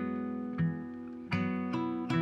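Background music on acoustic guitar: plucked notes and chords that ring on, a new one struck about every half second.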